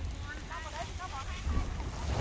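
Wind buffeting the microphone in a low rumble, with faint voices of people talking in the background.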